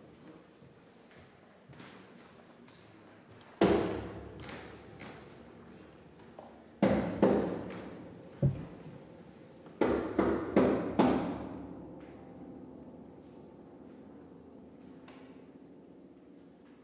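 Steinway grand piano struck in sparse, hard attacks that ring on and fade away: one about three and a half seconds in, three more around seven to eight seconds (the last a low one), and a quick group of four around ten to eleven seconds that dies away slowly.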